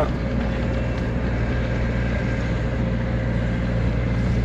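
Car engine and tyre noise heard from inside the moving car's cabin: a steady low hum.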